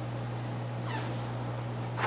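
Steady low electrical hum in a pause between speech, with a faint, brief squeak that falls in pitch about a second in.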